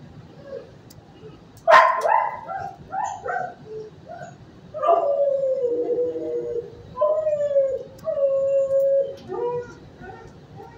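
A dog barks sharply once, then gives several short yips, followed by three long, drawn-out calls that slide slightly down in pitch.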